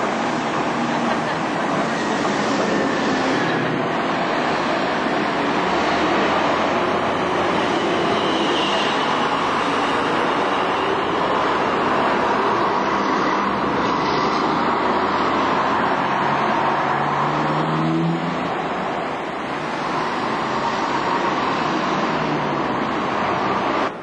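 Busy town-street traffic dominated by diesel double-decker buses running and passing close by, with one engine note climbing in pitch about two-thirds of the way through as a bus pulls away.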